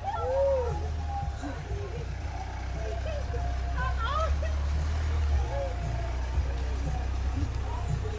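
Hyundai Tucson SUV's engine running with a steady low rumble as it rolls slowly up and stops, the rumble easing a little after about five seconds. Short vocal exclamations sound over it.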